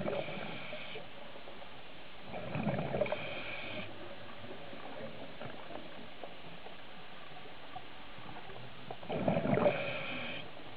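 Scuba diver's regulator underwater, breathing out in three bursts of crackling, gurgling exhaust bubbles: one near the start, one about two and a half seconds in, and one near the end, over a steady hiss.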